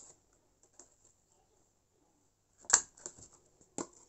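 Hole punch pressed down through a laminated paper sheet: one sharp snap about three-quarters of the way in, a few lighter clicks after it, and another click near the end.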